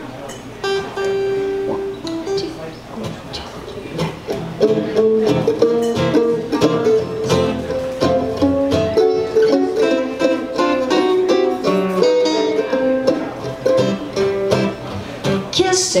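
Acoustic string band playing a song's instrumental intro: acoustic guitars strumming, with a higher plucked instrument picking on top. It opens with a few sustained notes and fills out into full rhythmic playing about four seconds in.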